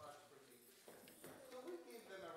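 Quiet room with faint voices and a few light footsteps as children get up from the chancel steps.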